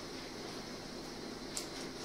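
Steady faint background hiss, with one soft snip of kitchen scissors cutting through a folded roti about one and a half seconds in.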